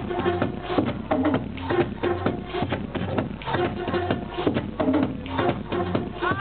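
Electronic dance music from a DJ set, played loud over a club sound system, with a steady kick-drum beat. The sound is dull and muffled, with no treble.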